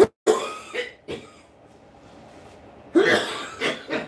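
A man coughing hard in two fits: several coughs in the first second and another run of coughs about three seconds in.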